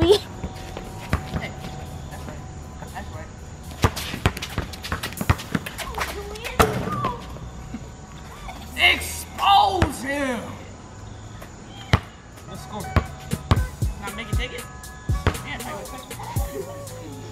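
Basketball bouncing on a concrete court, a run of irregular dribbles and thuds, with a voice calling out a couple of times near the middle. A beat plays quietly underneath.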